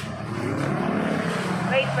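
Street traffic noise, with a motor vehicle running nearby under faint background voices; a woman starts talking near the end.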